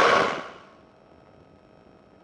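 Microlight cockpit noise picked up by the pilot's headset microphone: a loud, even rush with a steady hum fades out within about half a second, as the intercom microphone gate closes, leaving near silence.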